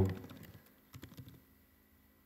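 A few faint keystrokes on a computer keyboard, clustered about a second in, as a short expression is typed.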